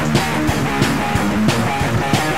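Black metal music: a distorted electric guitar riff over drums keeping a steady beat.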